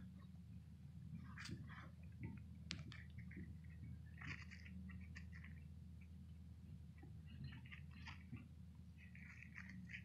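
Faint, scattered crackles and rustles of loose soil and grass handled with gloved fingers while a small find is picked out of the dirt.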